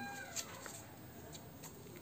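Faint clicks and rustles of a card deck being handled as a card is drawn and laid down, with a brief high wavering tone fading out right at the start.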